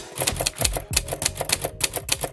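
Typing sound effect: a rapid, irregular run of key clicks, starting suddenly and going on without a break, over faint background music.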